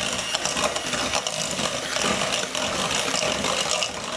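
Electric hand mixer running steadily, its beaters whisking eggs and sugar in a stainless steel bowl.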